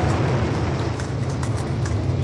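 A steady low rumble with a hiss above it and a few faint crackles.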